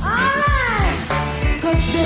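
Live reggae band playing, with a steady bass and kick-drum beat. Over it, one high pitched note slides up and back down within the first second.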